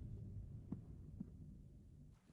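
A low, throbbing rumble from the film soundtrack that fades away, with two faint knocks about two-thirds of a second and a little over a second in.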